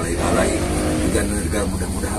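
A man speaking Indonesian, leading a prayer, over a steady low rumble.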